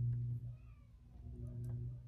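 Washing machine running in the next room: a low hum that swells and fades about every second and a half.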